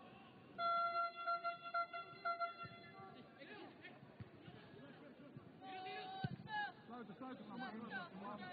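Players' and spectators' shouts carrying across an outdoor football pitch during play, with one long steady held note, pulsing in loudness, from about half a second in to about three seconds.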